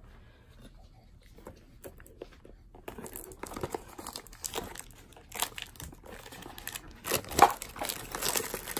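Clear cellophane shrink-wrap crinkling and tearing as it is worked off a trading card box. It is faint for the first three seconds, then crackles continuously, with a loud sharp rip a little past seven seconds in.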